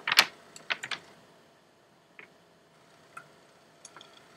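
Handling noise close to the microphone, as a paper sign is held up to the camera: a cluster of sharp clicks and rustles in the first second, then a few faint, scattered ticks.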